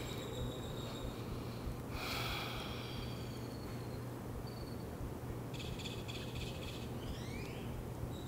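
Quiet outdoor ambience with a steady low hum, a soft breath about two seconds in, and faint high chirps in the second half.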